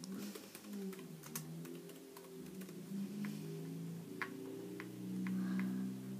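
Laptop keyboard typing and mouse clicks: scattered sharp clicks throughout. Under them runs a faint low wavering tone that swells near the end.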